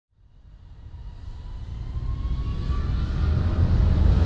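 Logo-intro riser sound effect: a low rumble that swells steadily from silence, with a faint tone gliding slowly upward.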